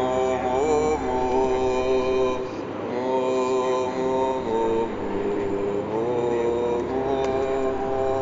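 A man's voice chanting in long, held notes that slide up into each next note, over the low steady hum of a car driving.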